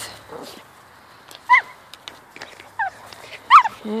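A dog whining in three short, high cries that fall in pitch, the last one the loudest.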